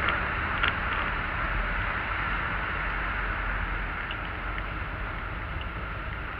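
Steady road and engine noise inside a moving car's cabin: an even low rumble with a few faint clicks.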